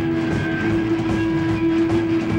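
Punk rock band playing live through a club PA, with bass and drums underneath. A single steady high tone comes in just after the start and holds, as from a long sustained electric-guitar note.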